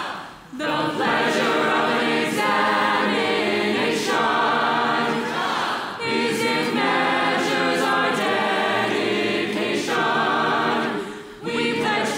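Mixed choir of men and women singing a slow, solemn anthem in harmony, in long held phrases with short breaks about half a second in and near the end.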